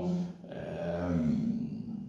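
A person's low, drawn-out vocal murmur, a held hesitation sound between spoken phrases, steady in pitch for about a second and then fading into quieter murmuring.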